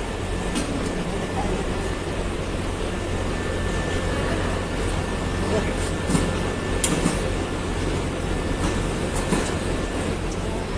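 Cable extrusion line running in a wire and cable factory: a steady mechanical drone with a low hum underneath. A few sharp clicks stand out about six and seven seconds in.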